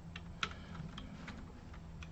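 Light typing on a computer keyboard: a few soft, separate key clicks as a short word is typed into a name field, the loudest about half a second in.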